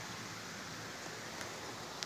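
Steady, even hiss of outdoor background noise, with no distinct events.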